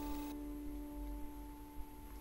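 A sitar's last note ringing on and slowly dying away, a steady pitch with its overtones. The bright upper ring cuts off about a third of a second in, leaving the lower tone fading.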